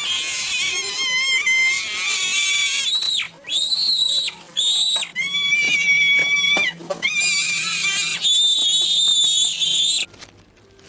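A young boy screaming in a tantrum, very high-pitched long wails with short breaks about three and a half, four and a half and seven seconds in; it cuts off suddenly at the end.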